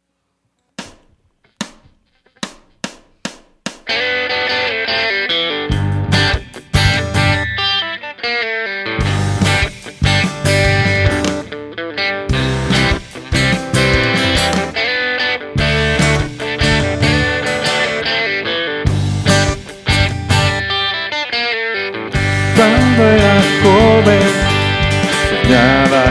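A few short, separate clicks like a count-in, then electric and acoustic guitars playing the instrumental intro of a country song over a low, pulsing bass beat. The music grows louder a few seconds before the end.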